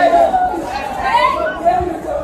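Crowd of many voices chattering and calling out at once, with one voice rising in a call about a second in.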